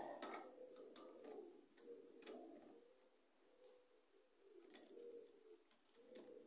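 Faint, scattered light clicks of plastic model railway wagons and their couplings being handled and coupled by hand, over near-silent room tone.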